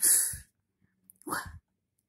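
A person's voice sounding out isolated phonics sounds: a short breathy hiss like a sounded-out "f" or "sh", then a brief second sound with a rising pitch about a second later.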